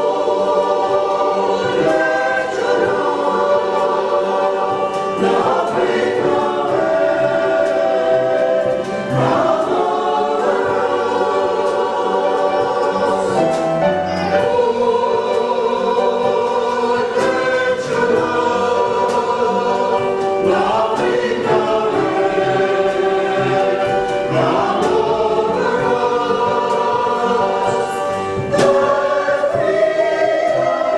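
Salvation Army songster brigade, a mixed choir of men's and women's voices, singing a slow piece in several parts.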